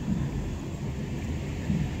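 Steady low rumble of a car driving along a city street, heard from inside the cabin.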